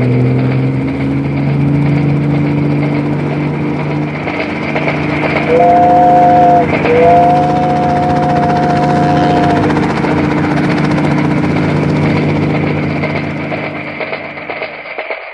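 Cartoon helicopter engine and rotor sound effect: a steady mechanical drone that rises slightly in pitch over the first few seconds as it spins up. In the middle a two-note horn sounds twice, once briefly and then held for about two and a half seconds.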